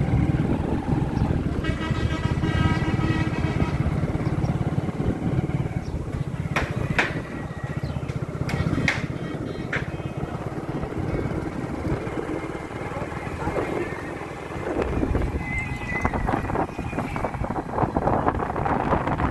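Motor vehicle driving along a road, heard from on board: a steady low engine and road rumble.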